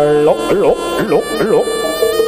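Reedy shawm of a jaranan ensemble, likely the slompret, playing a held note. About a third of a second in it breaks into quick wavering swoops up and down in pitch, then settles onto a steady note near the end.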